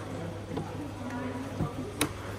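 Easy Connect closed-transfer coupler being worked by hand: a dull knock, then a sharp plastic click near the end as the can and lever are brought back around into place. Faint voices and a steady low hum run underneath.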